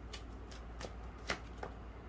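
Tarot cards being handled on a table: a few faint, separate clicks and slaps of card on card, the sharpest a little past a second in.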